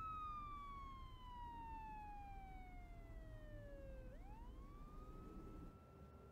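A faint emergency-vehicle siren wailing: its pitch falls slowly for about four seconds, then sweeps back up and holds.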